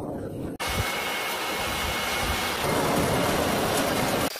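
Air blower forcing air through a perforated pipe into a brick charcoal forge: a steady rushing roar. It drops out for an instant about half a second in and comes back louder.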